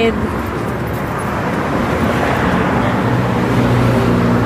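Road traffic noise: a steady rush of passing vehicles, with one vehicle's engine hum coming in about halfway through and growing a little louder.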